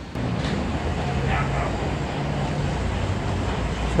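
Steady low rumble of distant engines, with some wind on the microphone.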